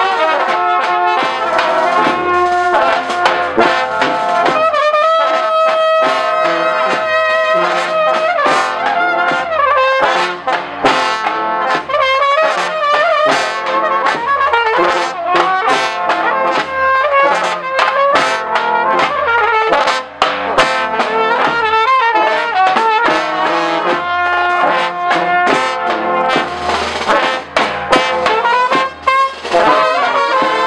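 Live brass band playing a lively dance tune close up: trumpets and larger brass horns carry the melody over a steady, pulsing beat.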